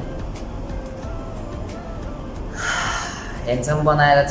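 Faint background music, then a man's breathy gasp a little under three seconds in. His voice starts again near the end.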